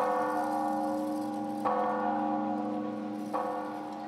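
A church bell struck three times at an even, slow pace, about a second and a half apart, each stroke ringing on into the next.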